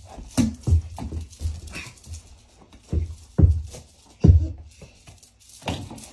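Small rubber toy basketball being dribbled on carpet: several dull thumps at uneven spacing, loudest around three and a half and four and a half seconds in.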